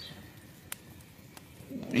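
A pause in a man's speech: faint room hiss with two small clicks, then his voice starts again near the end.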